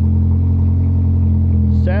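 Truck engine idling, an even low drone that holds steady throughout.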